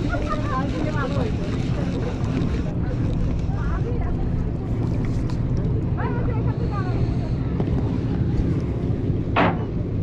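Steady low rumble of wind buffeting the microphone over open water, with a few short faint voices or calls and a brief sharp sound near the end.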